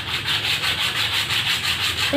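A plastic bottle cap being rubbed quickly back and forth on a sheet of sandpaper, an even, rapid scraping, to smooth the cap's surface.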